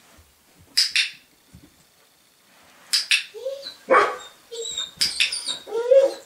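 Dog barking in short, sharp barks with brief whines between. There is one bark about a second in and another about three seconds in, then a quicker run of barks and whines over the last three seconds.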